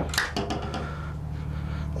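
A few short clicks and knocks from a hanging-locker door as a hand presses on its panel to open it, within the first half second, over a steady low hum.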